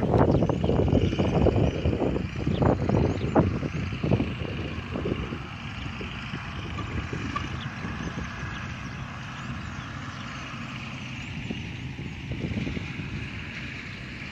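Wind buffeting the microphone in strong gusts for the first five seconds or so, then easing to a steadier, quieter outdoor background with a constant high-pitched chirring.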